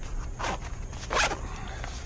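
A fabric knife pouch being handled, giving two short rasping rustles about three quarters of a second apart, the second louder.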